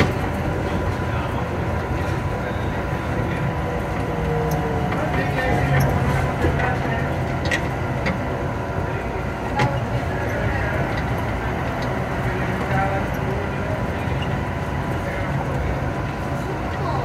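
Onboard ride noise of the MIA Mover, a rubber-tyred automated people mover, running along its guideway: a steady hum and rumble with a thin constant whine, and a few sharp clicks and knocks around the middle.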